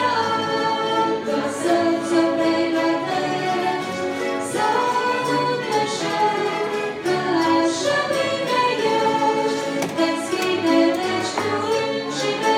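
Church string orchestra, led by violins, playing a slow melody in long held notes that shift every second or two.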